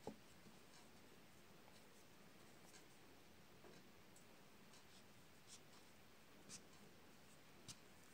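Near silence with faint handling noises: a small knock at the start, then a few scattered light ticks as a wooden skewer is worked through a raw potato on a wooden cutting board.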